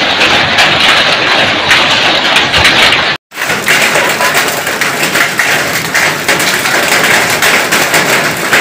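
Hailstorm: hail and rain pelting down on roofs and concrete as a loud, dense clatter of many small impacts. It breaks off for a moment about three seconds in, then carries on.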